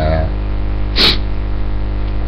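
Steady electrical mains hum on the webcam recording, with one short, sharp breath noise through the nose or mouth about a second in.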